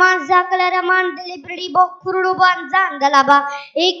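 A boy's voice singing words in a sing-song line that stays close to one pitch, with short breaks between phrases.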